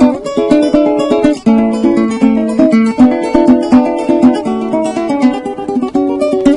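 Venezuelan cuatro playing a lively run of plucked melody notes over quick strummed chords.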